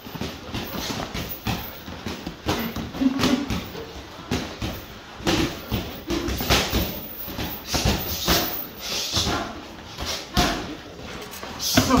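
Boxing gloves landing on gloves, arms and headgear in close-range sparring: an irregular run of sharp slaps and thuds, with shoes scuffing on the ring floor.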